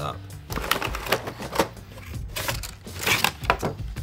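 A cardboard action-figure box being opened by hand: a run of sharp clicks, taps and rustles as the flaps are pulled and the packaging is handled, over background music.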